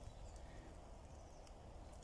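Near silence: faint outdoor woodland ambience with a low rumble.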